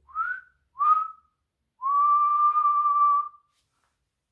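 A man whistling through pursed lips: two short rising notes, then one long steady held note.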